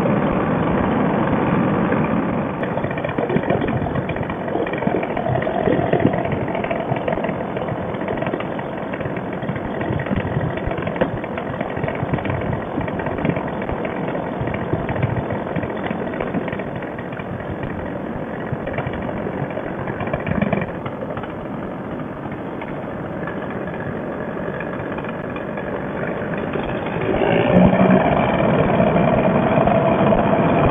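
Fresh Breeze Monster two-stroke paramotor engine and propeller running steadily in flight. It grows louder, with a higher tone, for the last few seconds.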